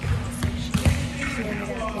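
Several sharp thumps of volleyballs being hit and striking the hardwood gym floor, mostly in the first second, over a steady hum.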